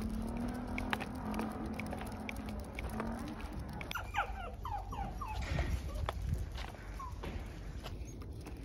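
Small dog whining and whimpering with excitement, a quick run of short falling whines about four seconds in and one more near the end.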